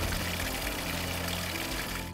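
Spring water pouring in a thin, steady stream from a stone spout into a basin, a continuous splashing hiss, with background music underneath.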